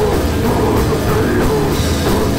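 Goregrind band playing live and loud: distorted electric guitars and bass over a drum kit with rapid cymbal and drum hits.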